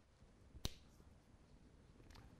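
A single sharp click from a marker tapping on a whiteboard, about two-thirds of a second in, against otherwise near-silent room tone.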